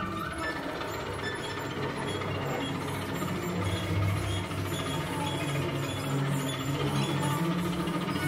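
A string quintet of violins, viola, cello and double bass playing a dense, scratchy, rapidly clicking texture, played with the bow, over low held notes in the cello and bass.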